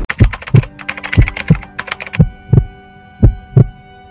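Heartbeat sound effect: four deep lub-dub beats about a second apart. Sharp glitchy clicks run through the first two seconds, and a steady hum sets in about halfway.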